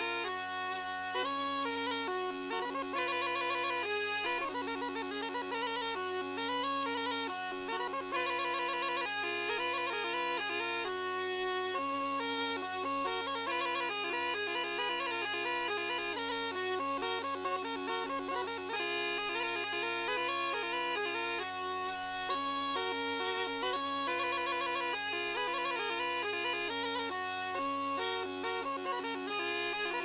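Traditional folk wind music: a quick, ornamented reed melody over a steady drone that never breaks.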